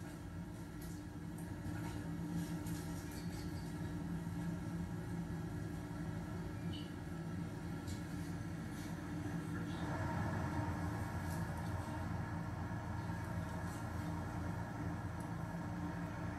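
Live feed's ambient sound of the descending capsule heard through a TV speaker: a steady low rumbling drone that grows louder and rougher about ten seconds in, as the capsule nears the ground.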